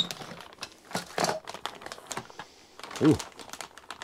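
Clear plastic parts bags crinkling and rustling as they are handled, with scattered small clicks and taps from the bagged metal parts.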